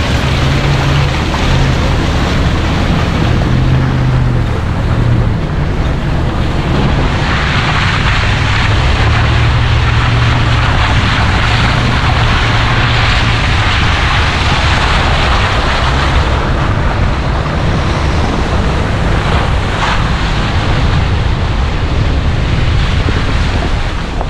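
A vehicle driving along a muddy dirt trail: a low engine and road rumble under a steady rush of noise that grows louder through the middle.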